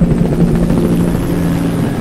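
Helicopter flying low overhead, the rapid, steady chop of its rotor blades.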